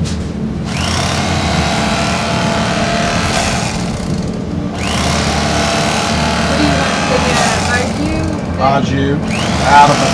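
Electric carving knife running as it cuts through smoked meat. Its motor buzz rises in pitch just after the start, drops away briefly around four seconds and spins up again near five. Voices come in near the end.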